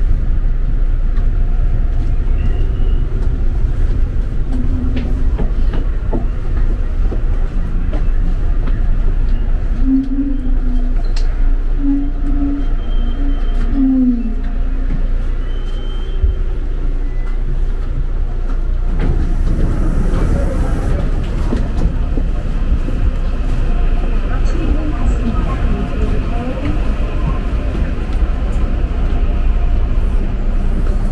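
Seoul Gyeongui-Jungang Line electric commuter train running, heard from inside the carriage as a steady, loud low rumble.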